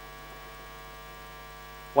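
Steady electrical mains hum on the sound system, a set of even, unchanging tones, with the start of a man's speech at the very end.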